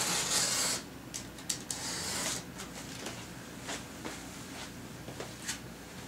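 A cardboard band-saw shipping box being worked open by hand: two rasping scrapes on the cardboard in the first couple of seconds, then a few light clicks and taps.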